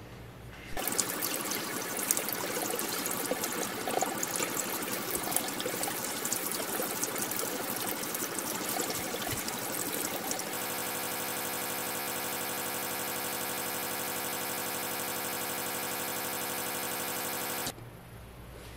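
Kitchen tap water running and splashing onto tie-dyed shirts in a sink, rinsing out excess dye. The splashing is uneven at first, turns very even about ten seconds in, and cuts off suddenly near the end.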